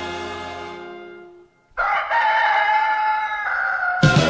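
A held music chord dies away, and after a brief silence a rooster crows once, a long call that falls slightly in pitch.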